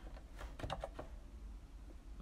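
Computer keyboard keystrokes: a quick run of several key presses in the first second, then fewer and fainter.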